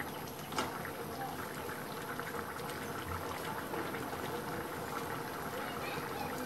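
Thick chicken and chana dal curry simmering and bubbling steadily in a metal pot on the stove. A single light knock, like a utensil against the pot, comes about half a second in.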